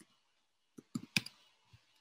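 A few quick keystrokes on a computer keyboard: a cluster of sharp clicks about a second in and one more soon after.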